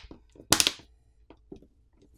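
Plastic back cover of a Poco M4 5G pressed onto the phone's frame: one short loud snap about half a second in as the catches engage, then a few faint clicks as the edges seat.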